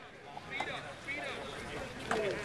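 Faint voices of football players and coaches calling out in the distance, with no one close to the microphone.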